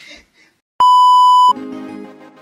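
A loud electronic bleep, one steady high tone lasting under a second, cutting in after a moment of silence; as it stops, background music with held chords begins.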